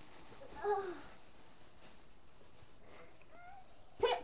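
A child's brief wordless vocal sound, falling in pitch, about half a second in, then a faint rising vocal sound a little after three seconds, over quiet room noise.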